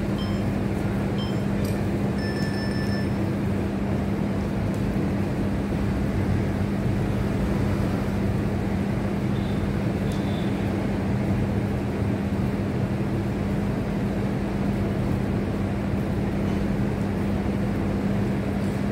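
A steady mechanical drone with a constant low hum, unchanging in level.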